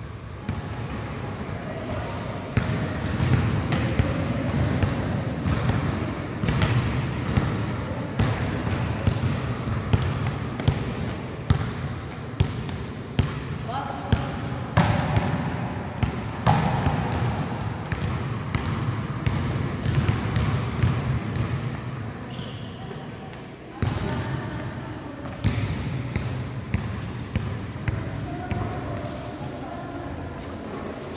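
Running footsteps and repeated ball impacts on a hard sports-hall floor as a boy works through an agility course, bouncing and throwing a basketball and dribbling and kicking a football. The impacts are sharp and irregular and ring in the bare hall, over a steady background rumble.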